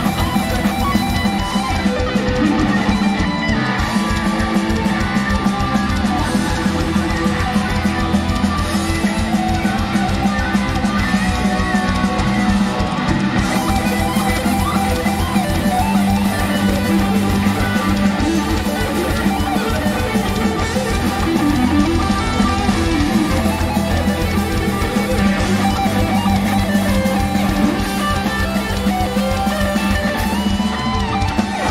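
Live heavy metal electric guitar solo played over drums.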